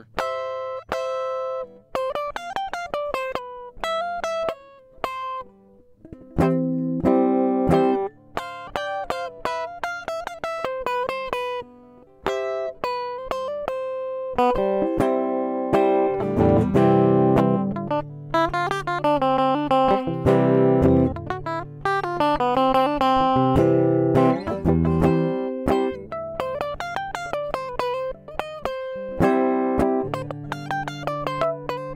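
Electric guitar played unaccompanied, noodling in C major with single picked notes and double stops. The playing grows busier about halfway through, with more overlapping notes and low bass notes joining in.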